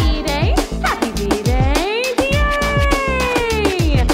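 Upbeat electronic birthday song with a steady drum beat and a sliding, pitched lead voice. The lead holds one long note through the second half that bends downward at the end.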